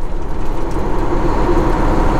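Semi truck's diesel engine and tyres on a wet highway, heard from inside the cab as a steady drone while cruising.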